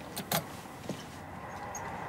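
Two sharp metallic clicks in quick succession, then a lighter one, from keys working the lock of a shop door, over a steady background hum that grows a little about a second in.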